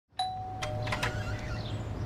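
Two-note doorbell chime, a ding-dong: a higher note sounds just after the start and a lower one follows about half a second later, both ringing on for around a second.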